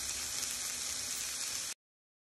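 Sliced onions, mushrooms and water chestnuts sizzling in butter in a pan, a steady hiss that cuts off suddenly near the end.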